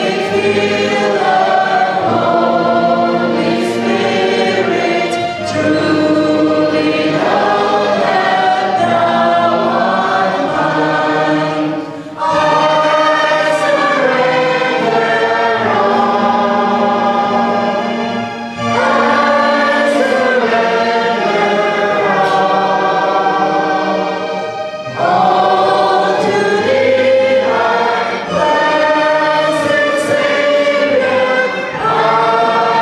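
A worship song sung by several voices, led by a woman at a microphone, with electric keyboard accompaniment. The phrases break briefly about every six seconds.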